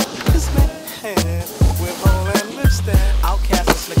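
Hip-hop backing track: a steady beat of kick drums and snare hits over deep bass notes, in a short gap between rapped lines, with a long held bass note near the end.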